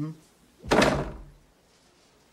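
A door swung shut with one loud thud about two-thirds of a second in.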